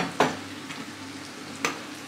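Chicken and beef satay skewers sizzling steadily on a table-top grill plate. A plastic water-filter jug knocks as it is set down on the table near the start, and there is a sharp click near the end.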